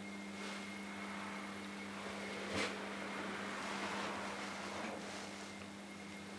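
Roped hydraulic elevator running, heard from inside the car: a steady low hum under a rushing noise that swells through the middle and fades near the end, with one short knock about two and a half seconds in.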